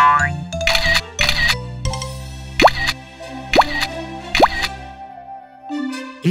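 Cartoon background music with comic sound effects: a quick rising glide at the start, two short crashes about a second in, then three fast upward swoops in the middle before the music fades.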